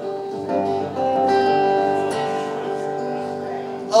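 Acoustic guitar playing: chords strummed about half a second and a second in, then left to ring and slowly fade.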